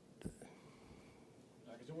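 A near-silent pause in a man's speech: faint room tone with a brief soft mouth or breath sound a quarter second in, and his voice returning near the end.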